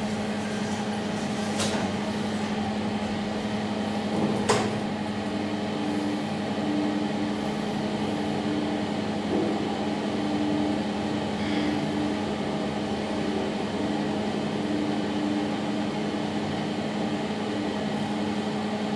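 2012 SMW traction elevator car travelling down its shaft, heard from inside the car: a steady hum from the drive, with a sharp click about four and a half seconds in and a higher tone coming and going through the middle of the ride.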